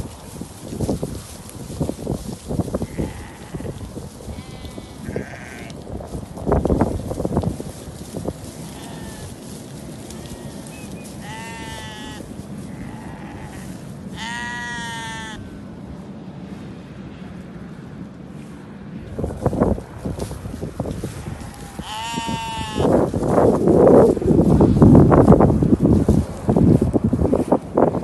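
Harri sheep in a flock bleating about four times, each a short wavering call, spread through the clip. Under the calls there is steady noise that grows into louder rustling and bumping near the end.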